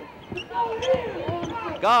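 A basketball bouncing several times on a hardwood court as it is dribbled. A commentator's voice comes in loudly near the end.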